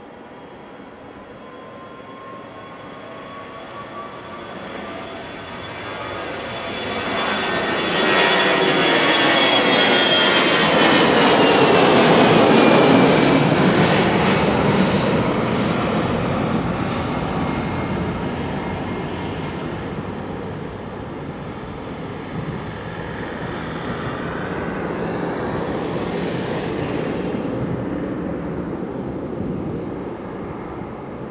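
easyJet Airbus A319-111 jet engines at takeoff power as the airliner lifts off and climbs past. The engine noise builds to its loudest about twelve seconds in, with a high whine that drops in pitch as the aircraft passes, then fades and swells again briefly near the end.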